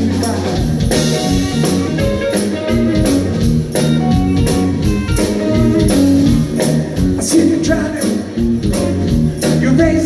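A live soul-funk band playing loud and steady: electric guitars, bass guitar, drum kit and keyboards over a regular beat.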